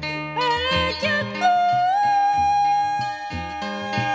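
Sundanese kacapi (box zither) plucked in a steady run of notes under a woman's high singing voice. The voice turns through a few ornamented notes, then holds one long note from about a second and a half in.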